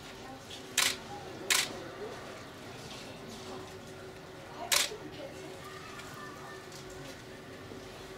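Camera shutter clicking three times: twice close together about a second in, then once more near five seconds, over a low steady hum and faint background voices.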